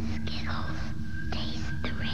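TV commercial soundtrack: a low music bed with a long held high tone and falling, whooshing space effects, over which a voice whispers.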